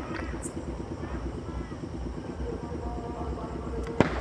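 A steady low engine-like rumble with a fast, even pulse, under faint distant voices; a sharp crack comes at the very end.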